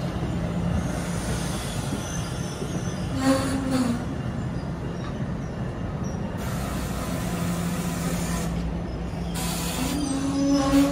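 NJ Transit multilevel passenger coaches rolling along the platform track with a steady rumble and hum of wheels on rail. A brief squeal comes about three seconds in.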